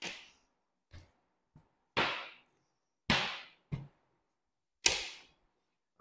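A series of short, sharp knocks and slaps on a plastic cutting board as a boning knife and cut beef steaks are handled and set down. The loudest come about two, three and five seconds in.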